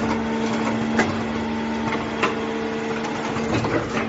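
Automatic earphone-plug soldering machine running: a steady electrical hum, with sharp mechanical clicks about a second in, a little past two seconds, and a couple more near the end.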